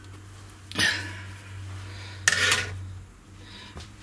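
Steel base cover plate of an Icom IC-9700 transceiver clattering as it is lifted off the radio and set aside: two metallic knocks, about a second in and just past two seconds in.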